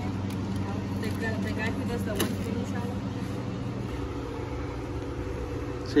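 A steady low mechanical hum, easing off about four seconds in, with quiet voices talking in the background.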